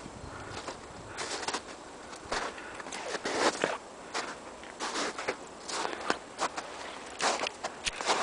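Footsteps crunching in snow: a person walking with short, uneven steps, about one or two a second.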